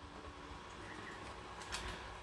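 Quiet room tone with a faint steady hum, and a few soft knocks shortly before the end.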